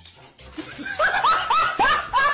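A person laughing in a rapid, high-pitched snicker, about four short syllables a second, starting about halfway in.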